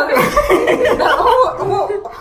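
A man and a woman laughing loudly together, their laughter overlapping.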